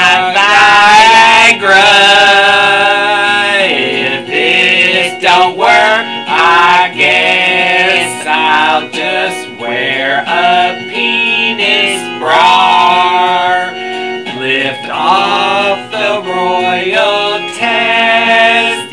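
Two voices singing a hymn-style song in unison over instrumental backing, the sung lines rising and breaking every second or two.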